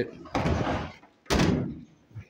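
The steel door of a 1964 Volkswagen Beetle is pushed shut and slams once, about a second and a half in, with a short scuffing noise just before it.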